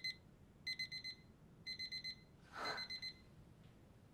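Faint electronic alarm beeping in quick clusters of about four beeps, repeating roughly once a second. A short breathy sound comes in about two and a half seconds in.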